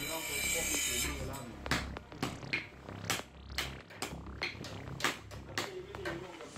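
Hand hammer striking a sword blade on an anvil during forging: about eight sharp metal blows at an uneven pace, starting about two seconds in.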